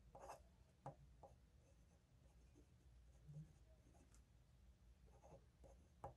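Faint scratching of a glass dip pen nib on paper as a word is written, in short separate strokes over near silence.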